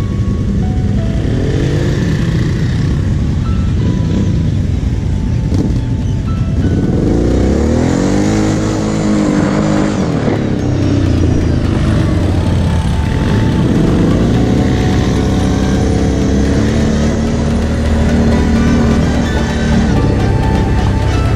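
Quad (ATV) engine revving and easing off again and again as it is ridden, its pitch rising and falling, with electronic music playing over it.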